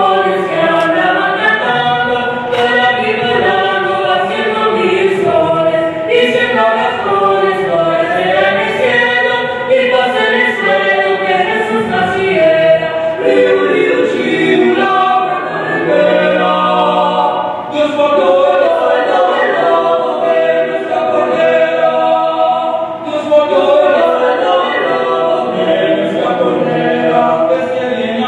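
A mixed vocal quartet of two women and two men singing a cappella in harmony, the parts held in long chords with short breaks between phrases.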